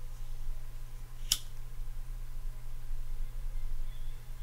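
A steady low hum, with a single sharp click about a second in.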